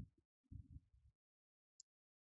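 Near silence, with a faint low thump about half a second in and a tiny click near the end.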